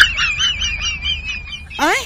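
Cartoon-style comedy sound effect: a high, fast warbling chatter, about eight wobbles a second, ending in a quick rising sweep near the end.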